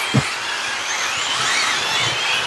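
A pack of 1/8 scale electric GT RC cars racing just after the start. Their electric motors give high-pitched whines that rise and fall with throttle over a steady hiss of tyres on asphalt.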